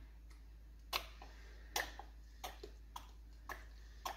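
Plastic squeeze bottle squirting dye stock onto water-soaked yarn: a few short, faint squirts and splats, roughly one a second, with the gross pee-like sound of liquid hitting wet fibre.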